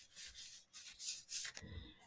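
Paper cards sliding and rubbing against each other as a handful is handled, in a few short, soft brushes, with a faint dull bump near the end.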